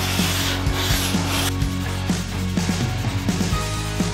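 Long hand sanding board stroked along the fibreglass gunnel edge of a boat hull, to sand it to a straight line. Two strong scraping strokes come in the first second and a half, then fainter strokes follow, with background music underneath.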